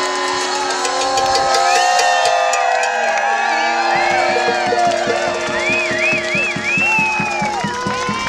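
A small New Orleans-style street band of saxophone, trumpet and melodica playing in the middle of a crowd, holding long notes at first. About halfway through, a steady beat of roughly four strokes a second comes in, and the crowd whoops and cheers over the music.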